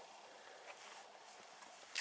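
Near silence: faint, even background hiss with no distinct sound.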